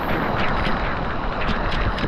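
Small waterfall pouring and splashing close up, a steady rushing noise with a few spatters of water.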